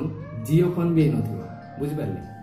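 A man's voice speaking one drawn-out phrase over background music of long held notes; the held note slides up early on and steps higher again near the end.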